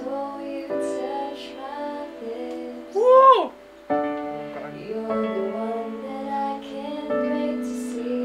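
A woman singing karaoke into a handheld microphone over a backing track with sustained chords. She sings one loud note about three seconds in that rises and then falls away.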